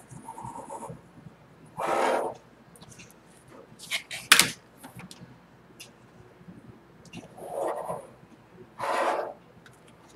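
Mechanical pencil drawing lines on drafting paper along a plastic triangle: a few short strokes, with a sharp click a little after four seconds in as the triangle is shifted on the board.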